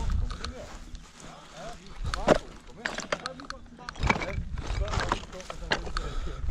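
Footsteps on rough hillside ground strewn with loose slate, with a few sharp clicks of stone underfoot, over a steady low rumble of wind on the microphone. Faint voices in the background.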